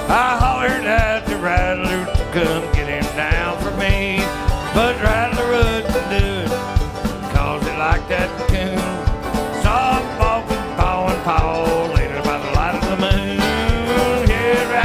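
Live bluegrass band playing an up-tempo tune at a steady, quick beat, with strummed acoustic guitar and banjo and a sliding lead line over the top.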